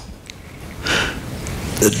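A man sniffs, a short breath drawn in through the nose, about a second in during a pause in his speech. He starts speaking again with a word near the end.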